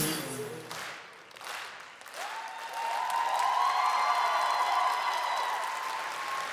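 Theatre audience applauding as the music stops, the clapping thinning briefly and then swelling again, with a long held tone rising over it from about two seconds in.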